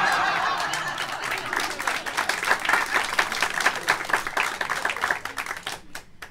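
Audience laughing, then applauding: loud crowd laughter at first, giving way to a patter of many hands clapping that fades out near the end.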